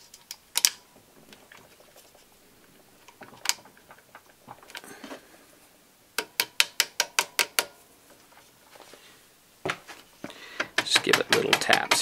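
Small metal parts of an AR-15 fire control group clicking as the trigger hammer is held down against its spring and its pin is worked into the lower receiver: a few single clicks, a quick run of about a dozen light clicks midway, then a denser run of taps near the end.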